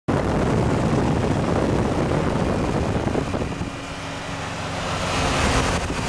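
Wind buffeting and road noise at speed through an open car window, then about halfway through the steady note of a car engine comes up out of it and grows louder toward the end as the 2003 Infiniti G35, a 3.5-litre V6, runs alongside.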